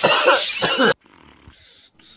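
A man's laughter that cuts off abruptly just under a second in. It is followed by a hiss of TV-static noise for the channel-change glitch, with a second short burst starting at the very end.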